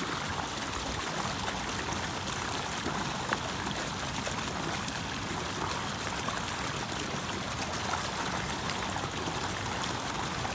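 Water gushing from a pipe outlet and splashing steadily into a trout raceway, the flow that flushes young trout down from the hatchery.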